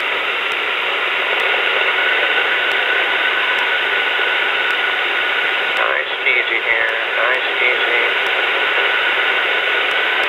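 Steady engine and wind noise of a weight-shift trike in flight, heard through the aircraft's headset intercom: a constant hiss with a faint steady engine tone, with no change in power. About six seconds in, a faint voice comes over the intercom or radio for a couple of seconds.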